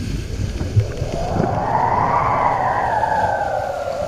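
Wind rushing over the camera microphone and water hissing under a kiteboard planing across chop, with a whistling tone that rises over about two seconds and then slowly sinks.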